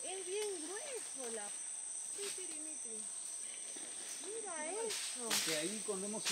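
Insects buzzing steadily with a high, even tone, with quiet voices talking now and then.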